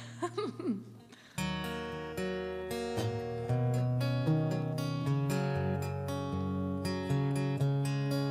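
A short laugh, then about a second and a half in an acoustic guitar starts the song's introduction, strummed chords ringing on.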